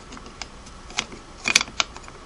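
Sharp, light metal clicks and taps of a Singer 301A's hinged nose cover against the machine's casting as its hinge pins are worked into their holes: scattered single clicks, with a quick cluster about one and a half seconds in.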